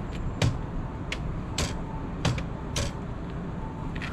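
Motorhome entry door latch and handle clicking and rattling, about five sharp clicks spread over a few seconds, as the door is worked open.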